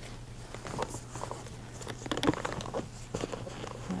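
Soft rustling of bed linens and light knocks as a training mannequin is shifted on a hospital bed, heard over a steady low hum.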